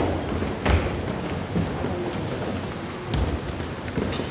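A group of people shuffling and stepping into place, with a couple of low thumps about a second in and near the end, over a steady room noise.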